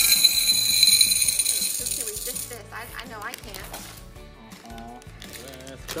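M&M's candy-coated chocolates poured from a bag into a glass bowl: a dense rattling clatter of small hard candies hitting the glass that lasts about two and a half seconds and then dies away.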